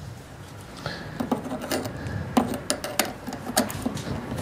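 Pliers working a dB killer insert out of the outlet of an FMF exhaust silencer: irregular metallic clicks and scrapes as the stiff insert is tugged and twisted against the end cap.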